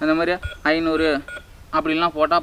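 Electronic keypad of a robot-shaped toy ATM coin bank giving a couple of short beeps as its number keys are pressed, to enter the code to open it.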